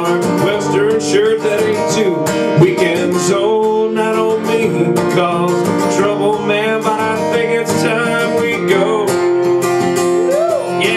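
Several acoustic guitars playing an instrumental break in a country song, a lead guitar picking a melody with sliding, bending notes over strummed chords.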